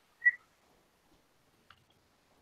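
A single short, high-pitched tone, a brief beep or whistle, about a quarter of a second in.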